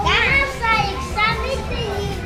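Young girls' voices, talking and calling out in high-pitched bursts, over a steady low background hum.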